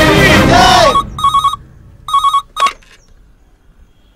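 Telephone ringing with a trilling electronic ring in short bursts about a second apart, the third one shorter. Loud music with voices is heard at the start, before the ringing begins.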